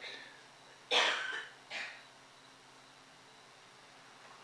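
A person coughing: one sharp cough about a second in and a smaller one shortly after.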